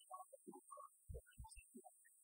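Digital keyboard playing quietly and slowly, with low bass notes under scattered higher notes.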